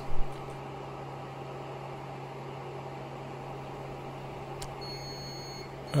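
HP ProLiant DL580 G4 server's cooling fans running with a steady hum and a low, even drone while the machine goes through its power-on self-test.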